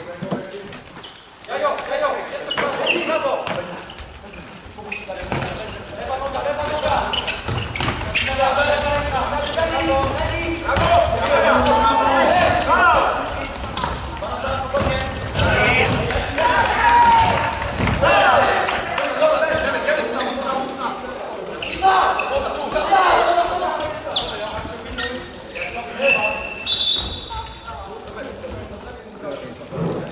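Futsal players and benches shouting and calling in a large echoing sports hall, over the knocks of the ball being kicked and bounced on the wooden court. Near the end comes a brief high whistle.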